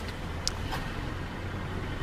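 Steady low rumble of a car engine running at idle, with one short click about half a second in.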